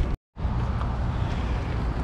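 A brief cut to silence, then steady outdoor rumble from wind on the microphone.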